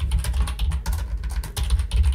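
Fast typing on a computer keyboard: a dense run of key clicks with dull low thuds under them.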